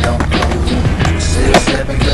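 Skateboard on asphalt: wheels rolling, with sharp clacks of the board near the start and, loudest, about a second and a half in, over hip-hop music with a steady beat.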